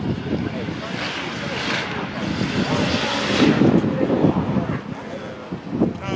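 An engine passing by: its noise swells to a peak about three to four seconds in, then fades.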